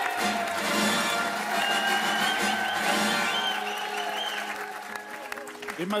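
Studio audience applauding over a game-show music sting that greets an introduced guest, both tapering off near the end.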